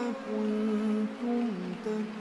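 A man's voice chanting Qur'an recitation, holding long drawn-out notes at a steady pitch with small bends, briefly breaking and dipping lower in pitch in the second half.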